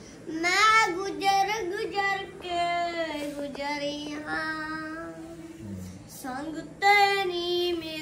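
A young boy singing a Sikh devotional song in Punjabi, solo, in a high child's voice with long held notes and a short breath near the middle.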